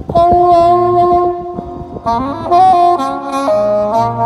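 Marching band's brass and woodwinds playing a loud held chord that starts suddenly, then a run of chords climbing in pitch about two seconds in, settling on a new held chord near the end.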